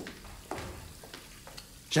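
Faint footsteps on a tiled restroom floor, a few light clicks over a low hiss.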